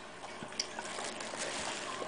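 Salt being sprinkled from the fingertips onto a snail on a tile countertop: a faint, even trickling hiss.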